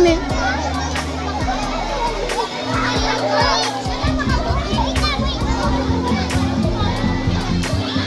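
Children's voices, shouting and chattering as they play in a swimming pool, with music playing in the background.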